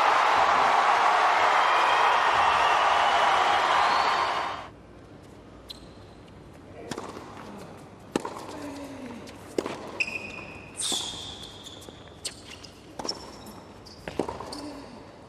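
Crowd applauding and cheering, cut off abruptly about a third of the way in. Then comes quieter court ambience with a tennis ball being bounced, the racket strikes of a rally, and short shoe squeaks on the hard court near the end.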